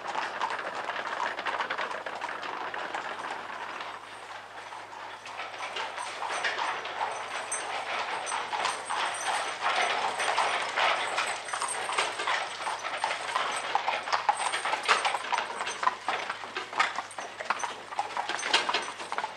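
Hooves of a pair of carriage horses clip-clopping on cobblestones, with the rattle of the carriage's wheels. The hoofbeats grow louder and sharper from about six seconds in as the carriage comes close.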